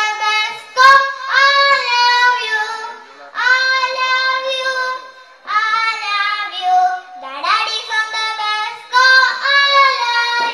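A young girl singing solo into a microphone with no instrumental backing, in four sung phrases with short breaks between.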